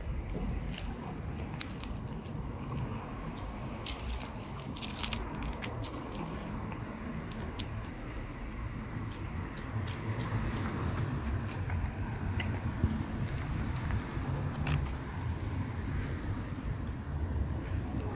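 A cat eating wet food off a plastic plate, with small scattered clicks of chewing and lip-smacking, over a steady low outdoor rumble.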